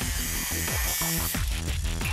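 Angle grinder with a cut-off wheel cutting through steel tube, a steady high-pitched grinding that stops about one and a half seconds in, over background music.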